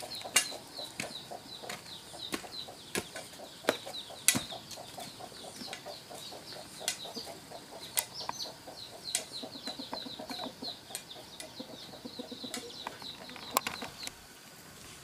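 Rapidly repeated chirping calls, about four a second, running steadily, with sharp clicks and knocks scattered through, the loudest about four seconds in and just before the end.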